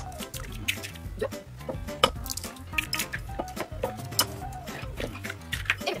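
Eggs being cracked on the rim of a small ceramic bowl and tipped into a plastic mixing bowl: a series of sharp taps and clicks, louder about two and four seconds in, over steady background music.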